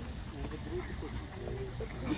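Voices talking over a steady low rumble of wind on the microphone.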